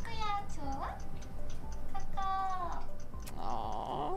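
Small white dog whining twice in high, drawn-out calls, over light background music.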